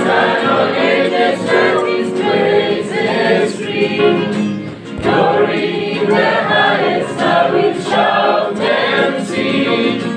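A choir singing a gospel song, many voices together throughout.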